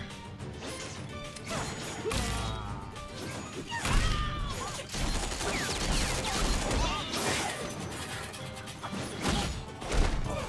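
Animated fight-scene soundtrack: several crashes and whooshes from the fight sound effects, spread through the stretch, over background music.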